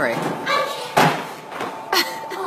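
A small child's body thudding against a running treadmill belt and the floor as he is carried off the back of the machine: one hard thump about a second in and a lighter one near the end.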